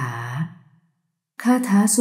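Only speech: Thai narration, a drawn-out word fading out, a brief dead silence, then the narration starting again.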